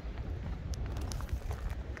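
Wind buffeting the microphone: a low, uneven rumble, with a couple of faint ticks a little under a second in.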